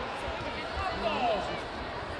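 Sports-hall background: faint distant voices and a few soft low thuds over a steady low hubbub.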